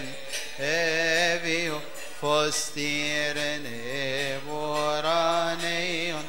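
Male voice chanting a Coptic Orthodox liturgical hymn in long, melismatic held notes that waver and step in pitch, with short breaks between phrases.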